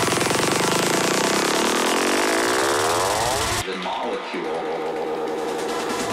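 Psytrance breakdown: the kick and bassline fade out while a rising synth sweep climbs steadily in pitch for about three and a half seconds. The sweep then cuts off suddenly, leaving a thinner, quieter synth passage without bass.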